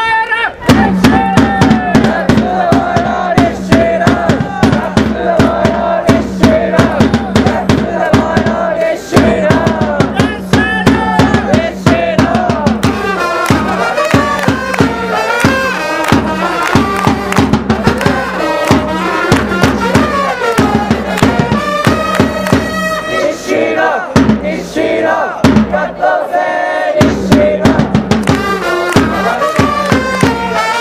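Japanese pro-baseball cheering section playing a player's cheer song: trumpets carry the melody over a steady, rapid drumbeat while the fans chant along. The drums drop back briefly near the end.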